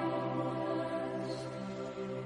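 Church choir singing, holding a sustained chord.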